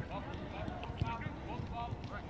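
Footballs being kicked on artificial turf: several short, dull thuds in an uneven run, under the distant calls of players.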